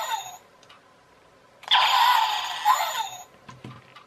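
Electronic shooting sound effect from the toy alien shooting set's small speaker, heard twice in the same form, each about a second and a half long and ending in a falling tone; one ends just after the start and the next begins near the middle.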